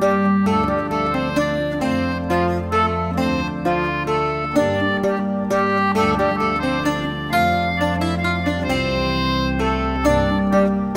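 Wheatstone English concertina, Sobell octave mandolin and Roland organ playing an Irish air together: plucked octave-mandolin notes and a reedy concertina line over long held organ bass notes.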